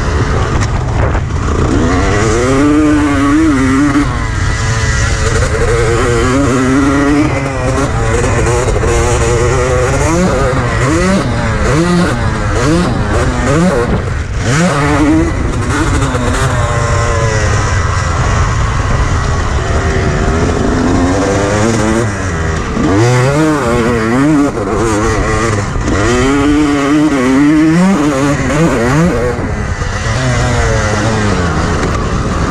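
Honda CR250 two-stroke single-cylinder motocross engine heard from on the bike, its pitch climbing and dropping again and again as the rider accelerates and backs off around a dirt track.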